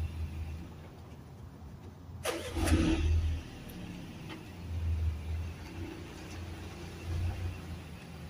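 Low rumble of a car going by that swells and fades more than once, with a sharp knock about two seconds in.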